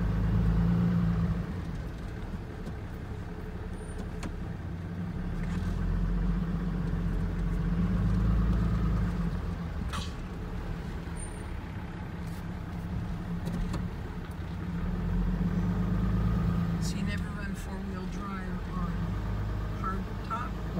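Pickup truck engine and road noise heard from inside the cab while driving on a dirt road. The engine drone swells and eases off about three times, with one sharp click about halfway through.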